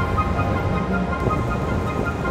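Background music with steady held tones over a low rumble of car and road noise.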